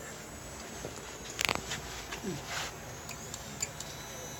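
Handling of a plastic radio-controlled car: a short cluster of sharp clicks and knocks about a second and a half in, then a few lighter ticks.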